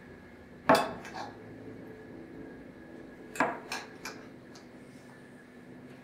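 A metal spoon clinking against a white ceramic casserole dish while basting chicken with the pan juices: a sharp clink about a second in, then several lighter clinks around the middle.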